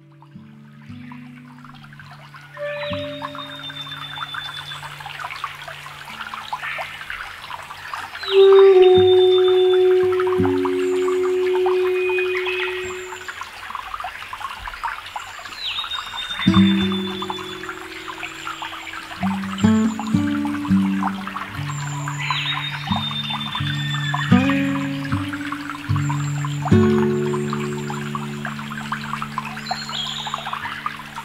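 Ambient electronic music: held synth drone notes that shift in pitch every few seconds, layered over a field recording of a trickling stream. A high held tone returns about every six seconds. The music fades in at the start and swells about eight seconds in.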